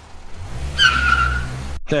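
Car sound effect: an engine rumble builds up, then the tyres squeal for most of a second before the sound cuts off suddenly, as the car pulls away.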